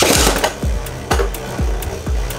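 Two Beyblade Burst tops, Spriggan Requiem and Legend Spriggan, ripped off their launchers with a short loud zipping rush at the start, then spinning and knocking together in a plastic stadium with sharp clicks. Background music with a steady beat runs underneath.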